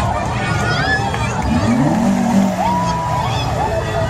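A car engine revs briefly about halfway through, its pitch rising, over the chatter and calls of a crowd.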